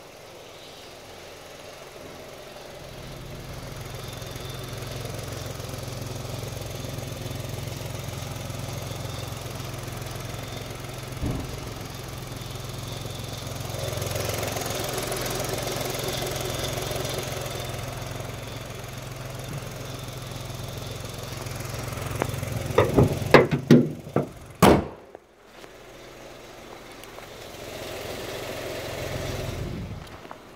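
Kia Morning's small petrol engine idling steadily, louder where it is heard close up in the engine bay. About 23 seconds in come several sharp knocks and then one loud bang.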